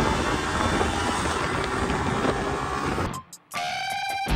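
Motorcycle engine running while riding, mixed with wind rushing over the microphone, as an even, noisy rumble. It cuts off abruptly about three seconds in, and after a short gap music begins near the end.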